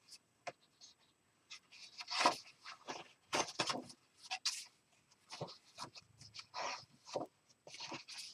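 Irregular paper rustling and soft clicks from handling and turning the pages of an art journal.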